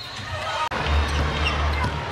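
Basketball game sound from the court: a basketball bouncing on the hardwood over arena music with a steady low bass. The sound cuts out abruptly about two-thirds of a second in and picks up again straight away.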